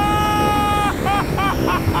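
Cartoon jetpack sound effect: a loud, steady rushing roar as the jetpack fires. Over it is a high tone, held for about a second and then wavering in short pulses about four times a second.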